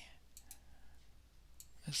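Faint computer mouse clicks: a few short clicks about half a second in and one more shortly before the end.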